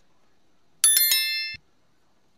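Bell-ring sound effect of an animated subscribe-and-notification-bell overlay: a bright, high, quick ring of a few strikes about a second in, lasting under a second.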